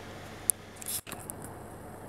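Handling noise from a handheld camera as it is tilted: a sharp high click about half a second in and a brief high rustle, with a momentary cut-out of the audio just after, over a steady background hiss.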